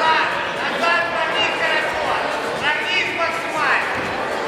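Several people talking and calling out at once over a steady background of crowd chatter, in a large indoor hall.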